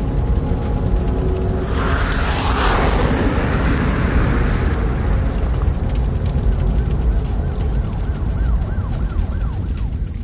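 Closing part of a sludge metal track: a heavy, sustained low distorted drone, with a swelling rush of noise about two seconds in. In the second half, a quickly repeating rising-and-falling siren-like wail sounds over the drone.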